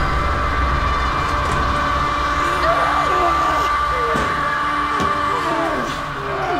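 Horror-trailer sound design: a sustained high drone over a steady low rumble, with wavering voices sliding up and down in pitch from about halfway through.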